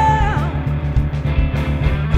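Rock music: a distorted Gibson Les Paul Classic with 57 Classic humbuckers, played through a Pro Co RAT distortion pedal and an Egnater Tweaker 40-watt amp, over a backing track with bass and drums. It opens on a long held lead note with vibrato that bends down about half a second in.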